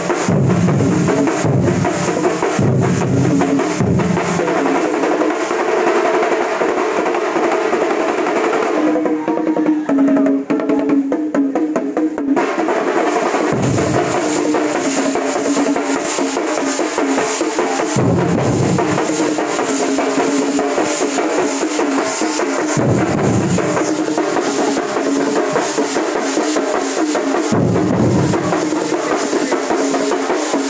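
A large thambolam drum troupe plays massed stick-beaten drums in a dense, fast, continuous rhythm, with a deep low-pitched pulse coming and going every few seconds. The sharp stick strokes thin out for about three seconds a third of the way in, then resume.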